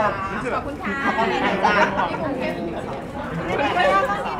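Overlapping chatter of several voices talking at once, with no single clear speaker.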